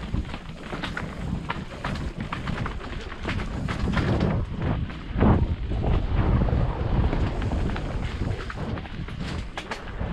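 Off-road motorcycle ridden slowly along a rough dirt singletrack, the engine's low running under wind buffeting on the microphone, with frequent knocks and rattles from the bike over bumps. It is loudest just after five seconds in.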